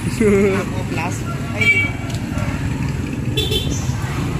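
Young people's voices in short bursts of talk and exclamation over a steady low rumble of street traffic.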